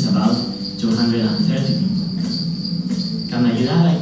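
Insects trilling steadily in one high, unbroken tone, with people's voices talking indistinctly underneath.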